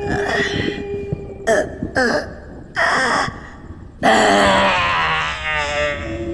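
A woman's short moaning sobs, then a loud, long, wavering wail of distress from about four seconds in, over a low steady tone.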